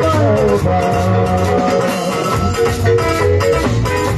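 Live band playing an instrumental passage: electric guitar and keyboard notes over a steady bass line and drums, with no singing.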